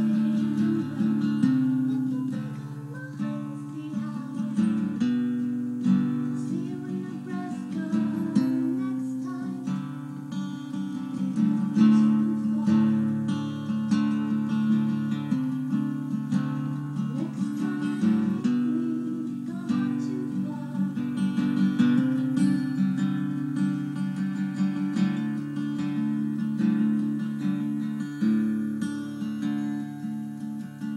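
Live acoustic guitar strummed steadily through a song, loud in the mix, with a faint singing voice barely carried over it: the voice had no microphone on a bad sound system.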